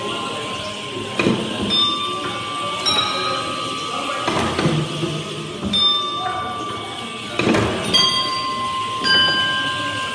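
Hand-cranked wooden automaton's gear train running, clunking roughly every second and a half, with short metallic pings ringing after the knocks.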